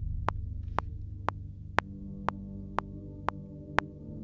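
A low, sustained Omnisphere synthesizer pad being played, with more notes joining about two seconds in, over Logic Pro X's metronome clicking twice a second.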